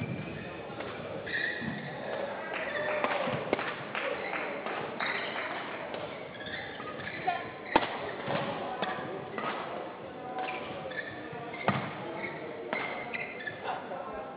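Badminton rally: repeated crisp racket hits on the shuttlecock, a few of them clearly louder, mixed with short squeaks of players' shoes on the court mat.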